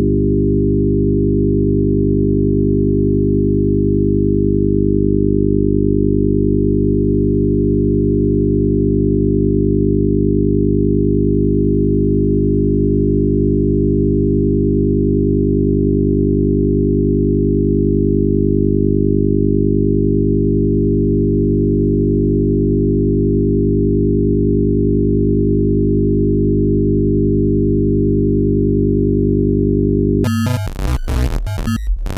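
Loud, steady electronic drone: a low chord of pure sine tones, held without change. It is the synthesised sound of a laser show, whose laser figures are traced from the same audio signal.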